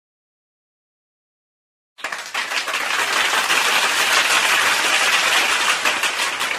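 Complete silence for about two seconds, then a crowd applauding: a loud, dense clatter of many hands clapping.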